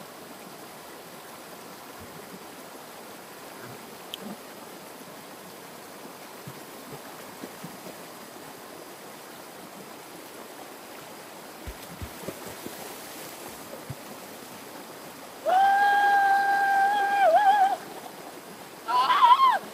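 Small stream rushing steadily over rocks in a shallow rapid. Near the end a person gives one long, high-pitched call, held on one note for about two seconds, louder than the water.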